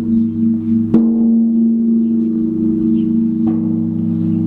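A low bell or gong ringing with a long, steady hum, struck again about a second in and once more past the middle.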